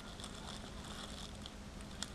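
Faint room tone with a low steady hum.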